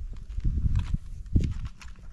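A long-handled snow rake dragging snow off a snow-covered woodshed roof: crunching scrapes and dull thuds of snow dropping, the loudest thud about one and a half seconds in.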